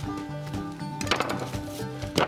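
Background music with held, steady notes, and a brief knock about a second in.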